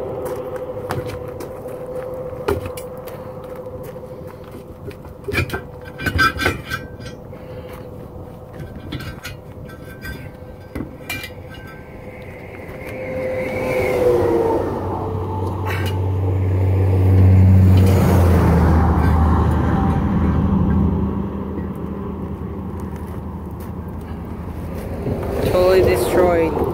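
Road traffic going by on an interstate highway, with a heavy vehicle's low drone swelling to its loudest a little past the middle and then fading. Scattered sharp metallic clicks and clinks of hand tools come in the first half as the wheel of a flat motorhome tire is unbolted.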